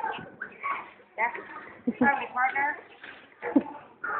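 A small child's voice in short high-pitched vocalizations and babble, with two sharp knocks, one about halfway through and one near the end.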